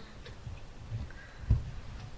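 Faint, irregular soft low knocks and thumps in a quiet room, the loudest about a second and a half in.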